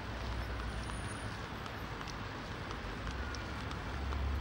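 Steady outdoor background noise with a low rumble on the camcorder microphone and a few faint light ticks.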